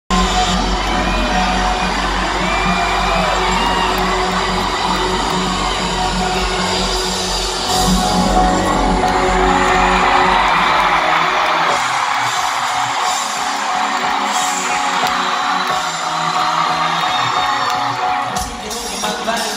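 Live band music at an arena concert, loud and echoing in the big hall, with the crowd yelling and whooping. The heavy bass drops out about two-thirds of the way through, leaving the higher music and crowd noise.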